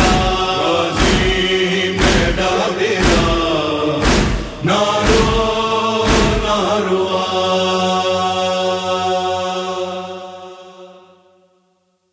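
Noha chant, male voices holding long notes over rhythmic matam chest-beating strikes about once a second. The strikes stop about six seconds in, and the last held note fades out near the end.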